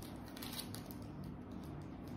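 Faint rustling and crinkling of a small clear plastic bag being handled and opened by hand.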